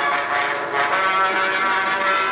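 Orchestral title music with sustained, full chords, played from the optical soundtrack of a 16 mm film print.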